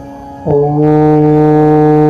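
Deep male voice chanting the mantra's closing 'ho', starting about half a second in and held as one long, very steady note over a quiet musical drone.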